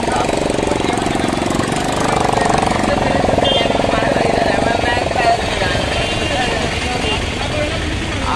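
Auto-rickshaw engine idling with a fast, even chugging beat, with people's voices over it.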